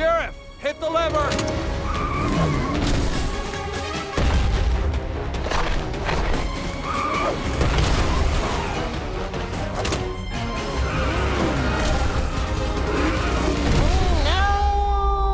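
Cartoon action soundtrack: music under booms and crashes, with wordless vocal noises from a creature. Near the end, a wailing siren-like glide begins.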